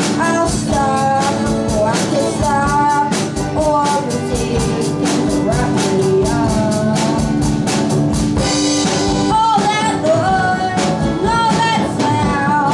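A live rock band playing: a singing voice over strummed acoustic guitar and a drum kit keeping a steady beat.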